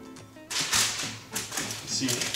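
Parchment paper rustling with a crinkly sound as a sheet of pie dough is laid onto a lined baking sheet, starting about half a second in, over light background music.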